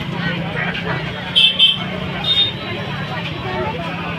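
Voices talking over steady street traffic noise, with short high-pitched vehicle horn toots: two in quick succession about a second and a half in, and another just after two seconds.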